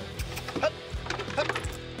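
Wooden crates knocking and thumping as a dog and its handler scramble over a stack of them, several knocks, the loudest just over half a second in, over background music.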